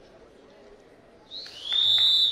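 Referee's whistle blown once near the end: a short rising chirp, then a held shrill blast of under a second, stopping the bout.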